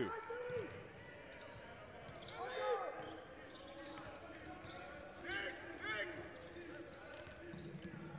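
Basketball being dribbled on a hardwood court during live play, with a few short sneaker squeaks on the floor.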